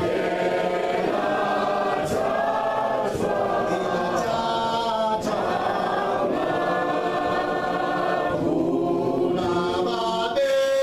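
A group of people singing together without instruments, in long held phrases with brief breaks between them.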